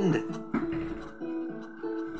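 Background music: a light plucked acoustic guitar tune, notes picked out at a steady walking pace, as a voice trails off at the very start.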